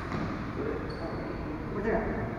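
Players' voices and footsteps on an indoor badminton court over a steady background hum, with a brief high squeak about a second in.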